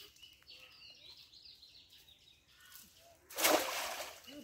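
Birds chirping faintly, then about three seconds in a short, loud rushing splash as a weighted cast net is thrown and hits the pond's surface.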